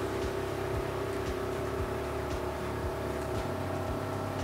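Motorboat engine running steadily at cruising speed, heard from the helm as an even drone, with irregular low thumps underneath.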